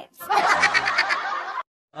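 Laughter: a quick run of rapid, pulsed laughs lasting about a second and a half, then cut off suddenly to silence.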